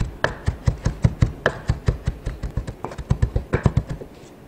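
Chef's knife mincing raw beef on a wooden cutting board: quick, even chops of the blade's rear edge striking the board, about five a second, stopping at the very end. The beef is being minced fine after being julienned.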